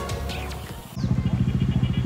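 Background music fades out. From about a second in, a motorcycle engine idles with a steady, even, low pulse.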